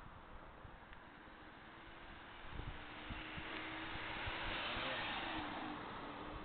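A vehicle driving past: a rushing sound that grows from about two and a half seconds in, peaks near five seconds and fades, with a steady engine note that drops in pitch as it passes.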